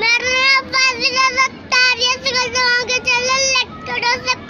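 A young boy singing in a high voice, holding a run of long notes with brief breaks between them.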